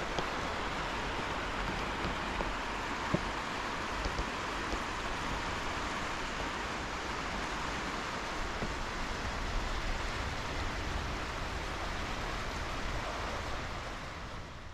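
Small sea waves lapping and washing on a sandy shore, a steady, even rush of noise.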